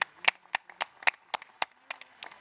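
A small group of people clapping their hands, about four distinct claps a second.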